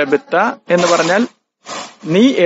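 Speech only: a man talking in short phrases with brief pauses between them.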